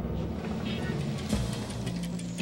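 Background music from the score: a low, droning synthesizer pad with scattered higher tones.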